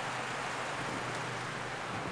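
Steady outdoor background noise with a faint, even low hum.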